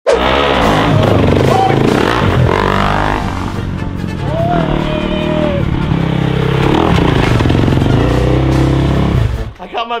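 Motocross dirt bike engine running and revving as the bike rides off, cutting out just before the end, with music and voices mixed over it.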